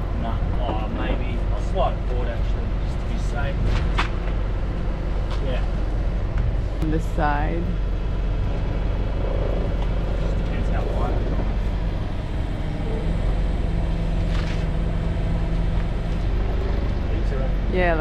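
Forklift engine running steadily at idle while it holds a fuel tank in place, with brief bits of talk over it.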